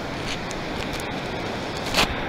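Steady rushing background noise of surf and wind at the water's edge, with a few faint clicks from handling.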